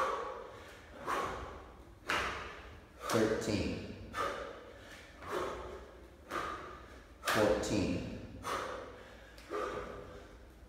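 A man doing jumping burpees, breathing hard with short voiced exhalations about once a second, the heavy breathing of hard exertion. Mixed in are thuds of his hands and bare feet hitting the floor and overhead hand claps.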